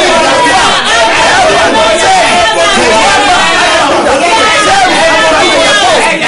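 A man and a woman praying aloud at the same time, their loud voices overlapping without a pause.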